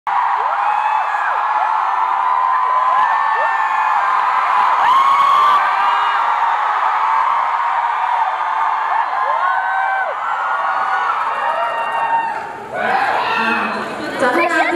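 Concert audience screaming and cheering: many high voices overlapping in rising and falling squeals. The noise dips briefly near the end, then picks up again under talking.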